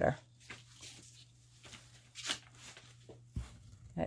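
Faint, intermittent scraping of a wooden craft stick spreading thick white acrylic paint across a canvas, over a low steady hum, with a soft knock about three and a half seconds in.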